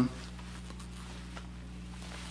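Steady low electrical hum from a plugged-in electric guitar rig and amplifier, with a few faint small clicks.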